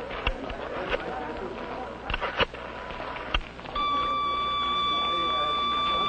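A Bell System Bellboy pocket pager sounding its signal: a steady electronic beep tone comes on about two-thirds of the way in and holds without a break. Before it there is only a faint background with a few scattered clicks.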